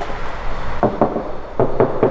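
Four short knocks in two quick pairs, the first a little under a second in, over a steady low hum.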